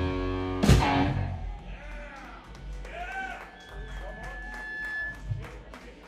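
A rock band's sustained electric-guitar chord ends on one loud closing hit about a second in, which rings down. It is followed by scattered clapping and whoops and voices from the audience.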